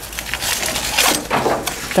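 Pattypan squash stems and leaves rustling and crunching in a few rough bursts as they are pulled apart and cut with a large kitchen knife.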